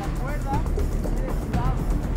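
Small boat's motor running with water and wind noise, under background music, with brief bits of shouted voices.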